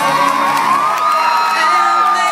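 Live audience screaming and whooping over a pop song being performed, with many overlapping high cries. Under the cries, a long high note in the music is held steady.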